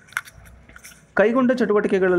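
A man's voice speaking Kannada, pausing for about a second with a few small mouth clicks and a breath before his talking starts again.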